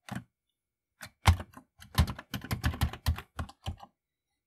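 Typing on a Commodore 64 keyboard: one keystroke, then after a short pause a quick run of about a dozen keystrokes as a command is typed in.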